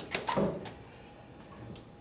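Door latch of a 1955 Chevrolet 210 clicking open as the door is pulled and swung wide: a click, a few light knocks and a short rustle in the first second, then quiet.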